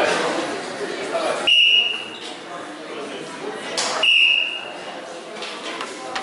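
A bout or round signal at a sanda match: a high ringing tone sounds twice, about two and a half seconds apart, each starting sharply and fading within about half a second. Crowd chatter echoes in the hall around it.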